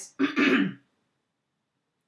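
A woman clearing her throat once, briefly.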